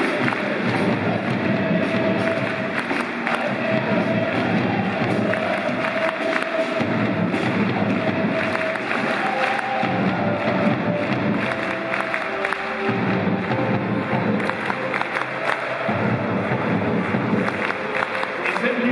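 Music played over a stadium's loudspeakers, with crowd noise from the stands.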